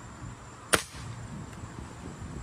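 A single air-rifle shot fired up into a tree: one sharp crack about three-quarters of a second in, over a low background rumble.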